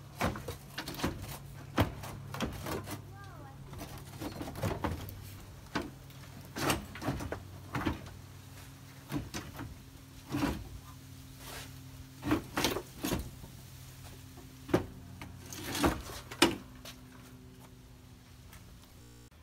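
A Nissan 300ZX radiator assembly being worked loose and slid out of the engine bay: irregular knocks and clunks of metal and plastic parts bumping together, over a steady low hum.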